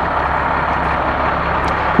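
Steady vehicle noise: an even hiss over a low hum, with no distinct events.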